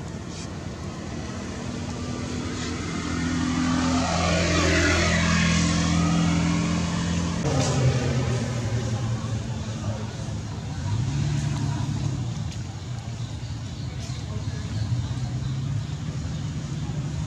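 Motor vehicle engine passing by, its steady hum swelling to loudest around four to six seconds in. The sound changes abruptly at about seven and a half seconds to a lower, steady engine hum that swells again briefly around eleven seconds.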